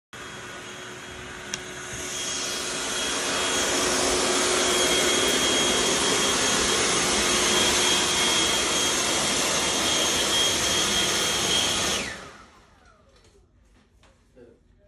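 Handheld leaf blower running: it builds up over the first few seconds to a steady rush of air with a high whine, then shuts off about twelve seconds in and winds down.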